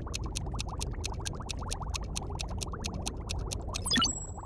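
Cartoon sound effects: water bubbling steadily, with a rapid, even ticking of about seven clicks a second like text being typed out. A quick sweep comes just before the end.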